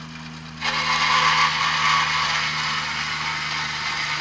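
Shop-built Gingery metal-cutting bandsaw, its motor humming steadily, with the blade starting to cut into a piece of angle iron about half a second in. The loud, steady cutting noise of blade on metal continues over the hum.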